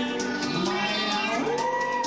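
Karaoke backing music with a man singing into a microphone through a helium voice effect, his voice pitched up high and sliding between notes.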